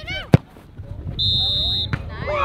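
A sharp thump of a soccer ball being kicked, then just past a second in one steady referee's whistle blast lasting over half a second.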